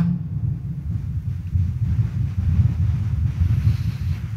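Low, uneven rumble of background noise in a large, crowded church, with no clear single source standing out.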